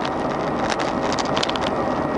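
Cabin noise of a 1996 Chevrolet Corsa 1.6 GL cruising on the highway: a steady drone of engine and tyres. Around the middle comes a patter of light clicking rattles from the GPS mount holding the camera.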